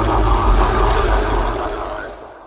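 A dense, loud rumbling noise, like a recorded engine or battle sound effect used as a sample between metal songs, fading out near the end.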